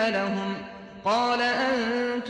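A male voice chanting Quranic Arabic in the slow, melodic tajwid style, holding long notes that bend gently in pitch. One phrase trails off and a new one begins about a second in.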